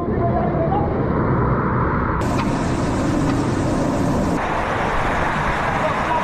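Water gushing and spraying through breach holes into a flooding ship damage-control training compartment: a steady, loud rushing noise, with the crew's voices faintly heard over it.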